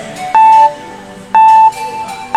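Countdown timer sound effect: a loud electronic beep at one steady pitch, twice, a second apart, over light background music with plucked guitar, marking the thinking time for a quiz question.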